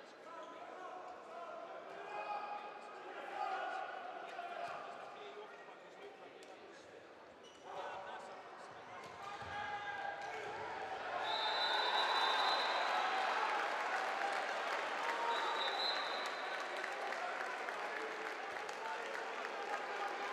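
Handball bouncing on an indoor court floor under a murmur of spectators' voices. About eleven seconds in the crowd noise swells and stays loud, with a high steady whistle tone twice.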